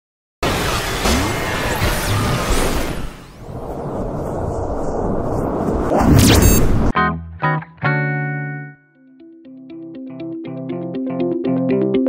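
Intro sting with electronic music: a dense, noisy sound effect that swells and cuts off suddenly about seven seconds in. Then pitched synth notes ring out and fade, giving way to a quick, steady beat.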